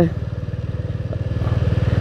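Royal Enfield motorcycle's single-cylinder engine running at low road speed, with a steady, evenly pulsed exhaust beat.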